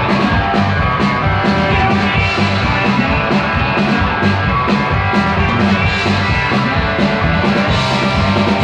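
Live country-rock band playing on stage, electric guitars and bass over a steady beat, loud and without a break.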